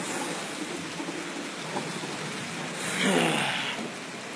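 Rain falling steadily, an even hiss, with a louder swell of noise about three seconds in.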